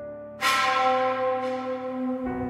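A bell struck once about half a second in, its tones ringing on and slowly fading, over soft background music.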